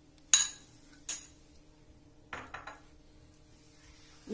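A metal spoon clinking against a metal kadhai: one sharp ringing clink near the start, a lighter one about a second in, and a few soft taps past the middle.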